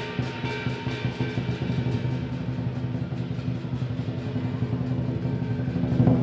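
Lion dance percussion, a Chinese lion drum with cymbals and gong, playing a steady, fast beat that grows slightly louder toward the end.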